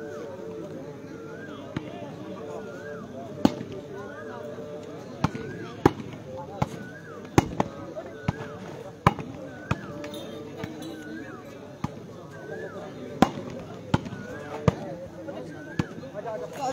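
Volleyball being struck by players' hands during a rally: sharp smacks at irregular intervals, about a dozen in all. Behind them, voices and a short high chirp that repeats a little more often than once a second.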